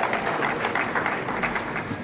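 Audience applauding, the clapping thinning out and dying down toward the end.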